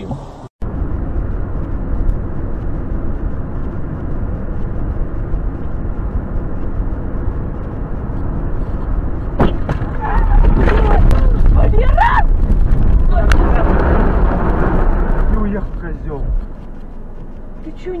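In-car dash-cam sound of a car driving on a highway, a steady low rumble of road and engine noise. About ten seconds in it gets louder, with several sharp knocks, as the car is hit by another car and runs off the road across a field; the rumble eases shortly before the end.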